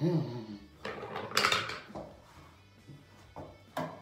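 Several sharp knocks and a brief clatter, the loudest about a second and a half in and two more near the end, with a short voice sound at the start and faint music underneath.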